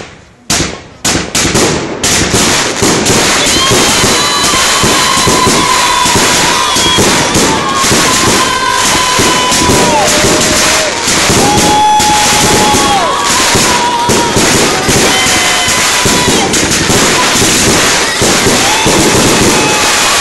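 Consumer fireworks going off: a few sharp pops, then about two seconds in a dense, continuous crackling of exploding stars. Over the crackle, several thin high whistles come and go, each one dropping in pitch as it ends.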